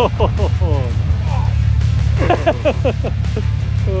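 Men laughing in short bursts over an off-road vehicle's engine idling with a steady low drone, with background music.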